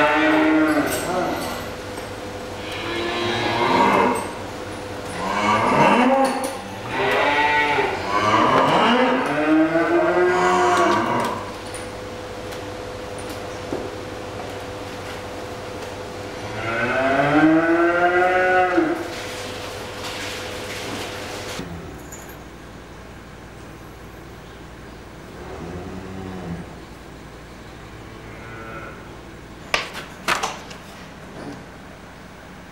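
Dairy cows mooing in a barn: a run of long, bending calls one after another in the first ten seconds or so, another loud call later, then a fainter one near the end. A steady hum runs underneath and stops about two-thirds of the way through.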